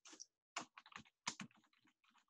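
Faint typing on a computer keyboard: a few louder keystrokes in the first second and a half, then a run of quicker, softer ones.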